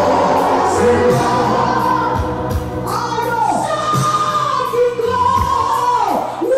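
A gospel choir singing a Zulu gospel song with instrumental accompaniment, held and gliding sung notes over occasional low drum thumps.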